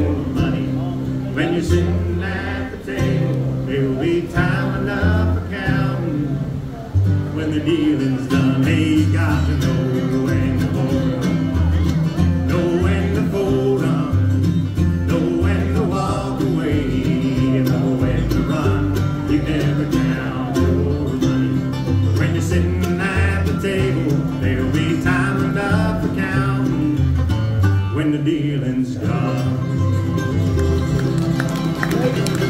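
Live bluegrass band playing: banjo, mandolin and acoustic guitar over an upright bass, with no break in the music.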